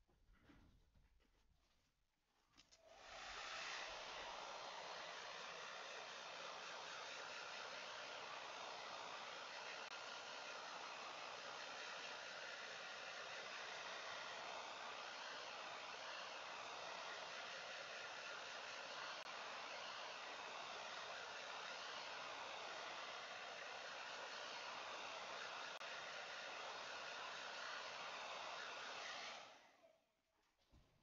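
Hair dryer switched on about three seconds in, blowing steadily, and switched off just before the end, drying a wet watercolour wash on the paper.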